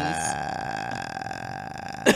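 A person burping: a low, drawn-out croak that fades away.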